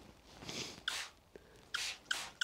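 Plastic trigger spray bottle squirting water: three short hissing squirts, the later two starting sharply, one a little after a second in and one near the end.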